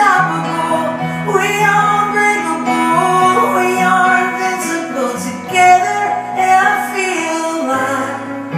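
Live acoustic rock performance: piano and a sung melody, with acoustic guitar.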